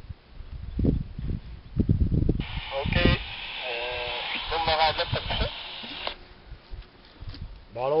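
A man's voice speaking French over a two-way radio, thin and narrow-sounding, cutting in about two and a half seconds in and cutting off sharply some four seconds later. Before it come a few low rumbling bursts.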